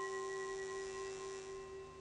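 A consecration bell, struck once just before, ringing on in several clear steady tones and slowly fading away; it marks the elevation of the host at the words of consecration.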